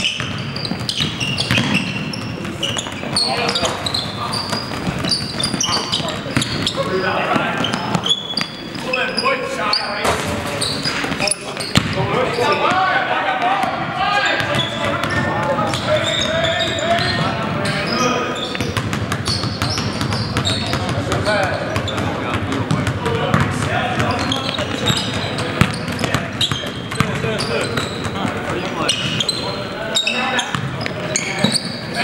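Basketball game on a hardwood gym court: the ball bouncing and knocking throughout, with players' shouts and calls in the big hall.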